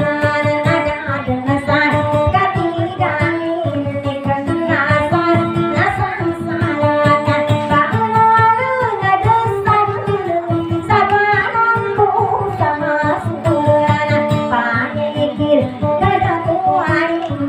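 A woman singing a Maguindanaon dayunday song into a microphone, with a quick, steady strummed acoustic guitar accompaniment.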